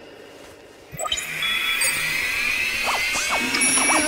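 Anime soundtrack swells in suddenly about a second in: music layered with electronic sweeping tones, steady high tones and short arcing chirps, the start-up effects of a persocom robot being switched on.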